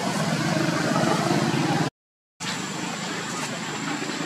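A low, steady motor rumble, cut by a half-second dropout to silence about two seconds in. After the gap it comes back quieter, with a thin high-pitched tone above it.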